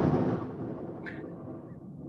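Rumble of a close thunderclap from a lightning strike about a hundred yards away, dying away steadily.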